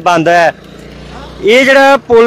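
A man speaking, and in a gap of about a second between his words a motor scooter's engine passes close by and moves away as a low hum.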